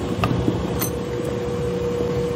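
Emery Thompson 12-quart batch freezer's dasher motor running with a steady hum while ice cream extrudes from the door chute, refrigeration switched off for the dispensing stage. A couple of light clicks sound over the hum.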